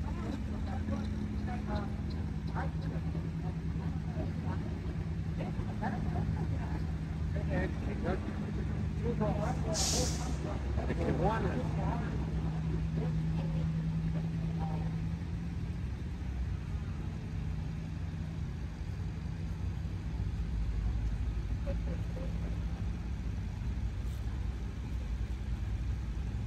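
Steady low drone of slow-moving vehicle engines as flower-covered parade floats roll past, with a short sharp hiss about ten seconds in and some voices of onlookers.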